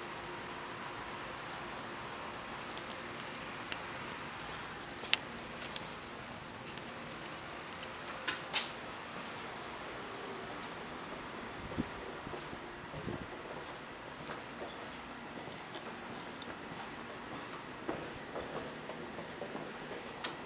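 Steady faint outdoor background noise with a low hum, broken by a few scattered sharp clicks and knocks. The sharpest comes about five seconds in, and a pair comes about eight seconds in.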